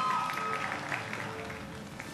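Applause fading away steadily, with music underneath.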